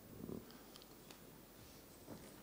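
Near silence: hall room tone in a pause between speech, with one faint brief sound about a quarter of a second in.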